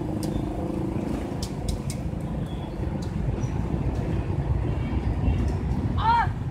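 Food deep-frying in a large aluminium pot of hot oil, with scattered short crackles over a steady low rumble of street traffic.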